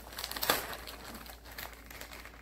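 A plastic bag of cotton balls crinkling as it is handled, with a cluster of sharp crackles about half a second in.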